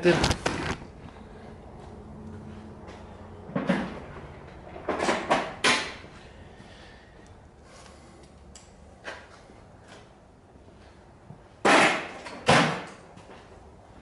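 Hand tools and metal engine parts clicking and clunking in short spells a few seconds apart, loudest near the end, as the cylinder of a Suzuki RM85 two-stroke engine is disconnected.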